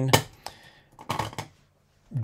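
Plastic stamp-pad cases being handled and set down on a desk: a few light clicks and clacks about a second in, after a man's voice trails off.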